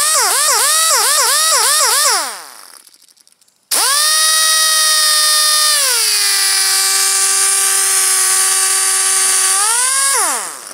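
Handheld pneumatic disc sander spinning free with a high whine. For the first two seconds its pitch wavers up and down about four times a second, then it winds down. After a short silence it starts again at a steady high pitch, drops to a lower steady pitch about six seconds in, and winds down at the end.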